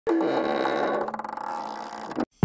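Synthesized logo-intro sound effect: it starts suddenly with a falling tone, breaks into a rapid flutter about a second in, and fades away.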